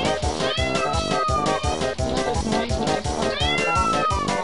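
A cat meowing twice, two drawn-out calls each arching in pitch, over background music with a steady beat.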